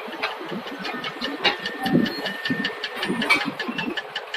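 An engine idling, with a rapid regular ticking of about five strokes a second.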